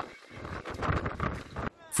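Storm wind gusting, with irregular clattering and rattling of loose objects.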